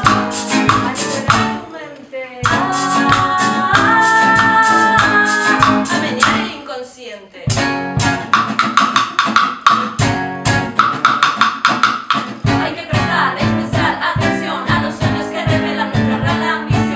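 Live cumbia song: an acoustic guitar strummed and two women's voices singing, over a steady rhythm of a stick beating a mounted percussion piece. The music drops away briefly about two seconds in and again around the sixth to seventh second.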